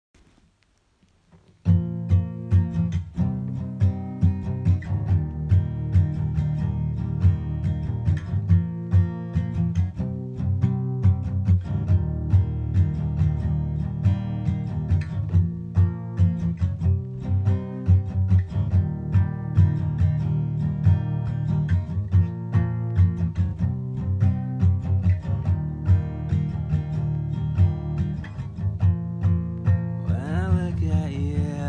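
Acoustic guitar strumming chords in a steady rhythm, starting about two seconds in, as an instrumental intro.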